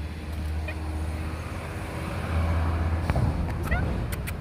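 Steady low rumble of distant road traffic, swelling a little midway, with a few light clicks and a short faint high call near the end.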